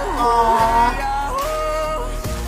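A woman singing a pop-soul song with band accompaniment, holding a strong high note that is loudest in the first second, then moving to a new pitch.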